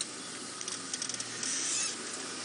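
Open safari vehicle driving on a dirt track: a steady low engine hum under a hiss of wind and tyre noise.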